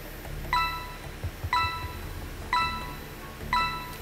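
Quiz-show countdown timer: a short electronic chime sounds once a second, four times, ticking off the seconds left to answer. Under it runs a low, steady music bed.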